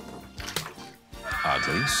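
Commercial soundtrack music. After a short lull about a second in, fans break into high-pitched excited screaming.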